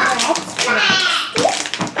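Children's high voices talking, with a plastic bag crinkling for a moment about a second in, and light knocks of a knife cutting on a wooden chopping board.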